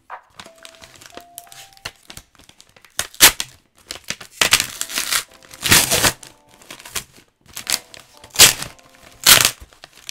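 Packaging being unwrapped by hand from a CGC-graded comic slab: short bursts of crinkling and tearing that start about three seconds in and repeat several times.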